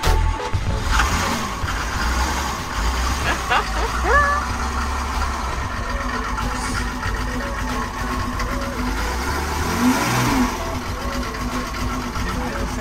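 Old Mercedes W126's engine turning over and running, with its throttle worked by hand through a pulled cable. A short rising squeal comes about four seconds in.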